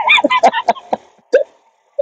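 A person's voice over an online voice-chat room: a quick run of short, choppy vocal sounds in the first second and a half, then a pause.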